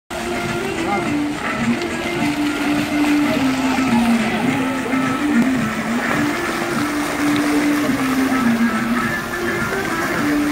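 Music from a musical fountain's loudspeakers, a slow melody of held notes, over the steady splashing of the fountain's water jets.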